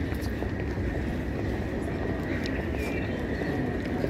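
Busy open-air square: footsteps of hard shoes on stone paving and a low murmur of voices over a steady low rumble.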